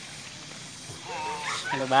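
Faint outdoor background, then a man's voice calling out loudly in short syllables ("bah") in the second half.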